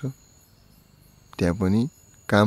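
A man's talking voice breaks off, and after about a second's pause he says a drawn-out syllable or two. A faint, steady, high-pitched tone like a cricket's trill runs underneath throughout.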